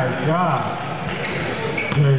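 A man's indistinct voice, rising and falling, in a large echoing gym during a basketball game, with a few soft knocks of play around it.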